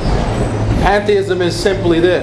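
A rushing noise with a low rumble for about the first second, then a man speaking.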